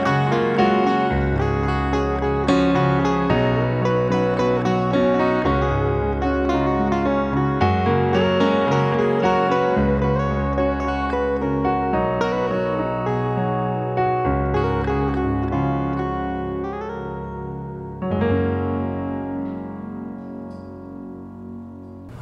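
Live instrumental passage of a slow song: a Roland FP-4 digital piano playing sustained chords with an electric guitar playing over them. The music winds down, with a last chord about 18 seconds in that fades away.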